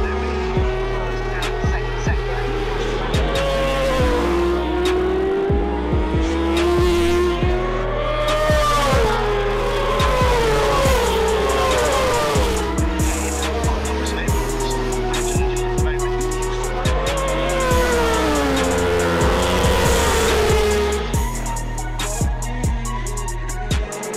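Racing motorcycle engines revving up and down, their pitch rising and dropping as the bikes pass and change gear, laid over background music with a steady bass line and beat.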